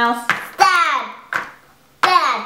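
Voices at a children's board game: a child's short falling voice, then a single light tap of a game piece on the cardboard board.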